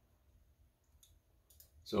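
Computer mouse button clicks: a few short, sharp clicks in the second half over quiet room tone.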